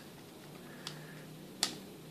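Two short sharp clicks, a faint one and then a louder one about a second and a half in, from a small blue plastic fan housing handled as a damp sponge is pressed into it.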